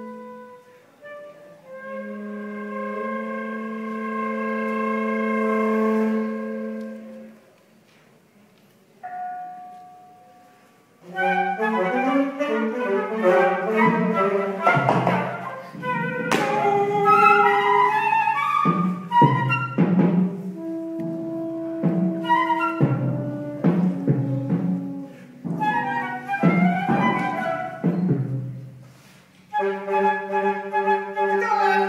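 Contemporary chamber music for flute, saxophone and percussion: long wind notes swell and fade, a near-silent pause follows, then from about eleven seconds in a busy passage of fast wind figures punctuated by sharp percussion strikes.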